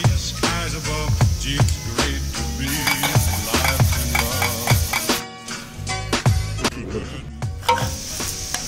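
Background music with a steady low beat, over a spoon beating egg in a stainless steel bowl.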